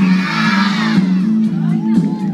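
A crowd of children cheering and shouting over music with steady low notes; the cheer swells up in the first second and then fades back under the music.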